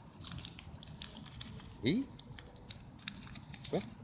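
Folded paper fortune teller (cootie catcher) being handled and worked open with the fingers: scattered small crinkles and clicks of paper.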